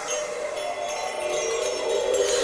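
Twinkling, shimmering chimes over a held tone, slowly growing louder: the opening of a musical logo sting.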